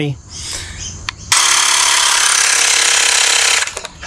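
Xiaomi Mi portable air pump (a battery mini compressor) starts about a second in and runs steadily for about two seconds, pumping the blaster's air chamber up to the 20 psi set on its dial, then cuts off abruptly as its sensor finds the set pressure reached.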